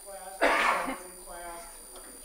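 A person clears their throat once, a short loud burst about half a second in, over faint distant speech.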